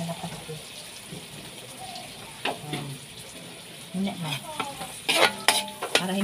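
Sliced onions and garlic sizzling gently in an aluminium wok over a lowered flame, while a metal spatula stirs them. The spatula scrapes and knocks against the pan about two and a half seconds in, then several times in quick succession near the end, the loudest sounds here.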